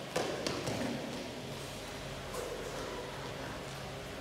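Badminton players' footsteps and lunge landings on a synthetic court mat during shadow footwork: a few light taps and thuds in the first second or so, then fainter scattered steps.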